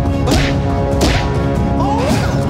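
Two sharp swishes, like fast punches or kicks cutting the air, over driving action-trailer music with a heavy low beat. The swishes come about a third of a second and about a second in.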